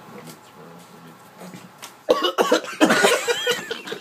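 A man suddenly coughing and sputtering, choking on a mouthful of soda while trying to swallow a pill. It starts about halfway through and runs as a loud, rough fit for about a second and a half.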